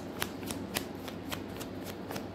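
A deck of tarot cards being shuffled in the hands, the cards slapping together in quick light clicks, about four a second.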